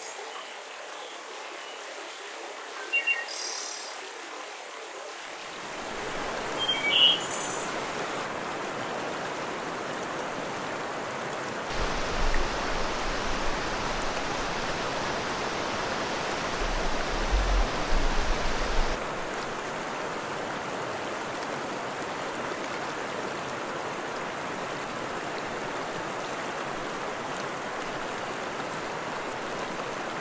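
A few bird chirps over quiet outdoor ambience in the first several seconds, then a steady rush of flowing river water that changes abruptly at several cuts, fullest in the middle stretch.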